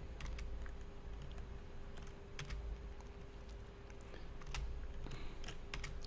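Scattered, irregular clicks of a computer keyboard and mouse being worked, over a faint steady hum.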